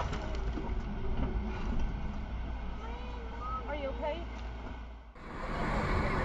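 Steady low vehicle rumble picked up by a dashcam microphone, with a person's voice heard briefly about three to four seconds in. The sound cuts off about five seconds in and gives way to street traffic noise.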